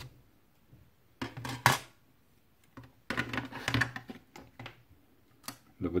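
Clear hard-plastic 2.5-inch hard drive enclosure being slid open and handled. Plastic scrapes with a sharp click about a second and a half in, a burst of scraping and clicking around three to four seconds in, and a few light taps after.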